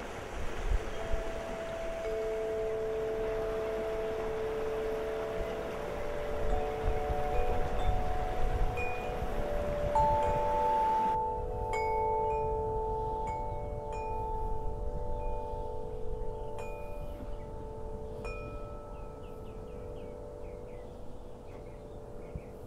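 Wind chime ringing, several long overlapping notes, over the steady rush of river water. About halfway through, the water noise drops away suddenly, leaving the chime notes, and a few faint chirps come in near the end.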